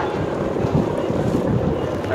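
Wind buffeting the microphone outdoors: a gusty, uneven low rumble over a steady rush of air.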